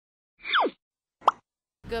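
Two short cartoon-like sound effects over total silence: a quick downward-sliding swoop, then a brief rising plop.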